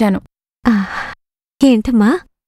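A woman's sigh about half a second long: a brief falling voice that trails off into a breathy exhale, between spoken lines.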